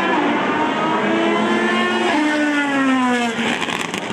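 Endurance-racing prototype car running at high revs on track. About two seconds in, a second engine note takes over and falls steadily in pitch as the car goes past, then fades near the end.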